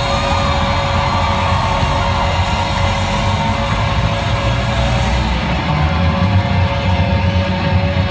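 A live band playing loud, dense rock music with guitar and held notes, recorded from within the crowd.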